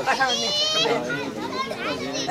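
Several people talking and calling out over each other, with one high-pitched voice standing out just under a second in.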